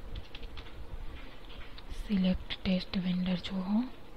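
Computer keyboard keys clicking as a name is typed. About two seconds in, a voice speaks a few low, indistinct syllables.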